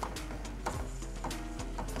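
Soft background music with a few held tones, and a few light clicks of a metal spoon stirring in a cooking pot.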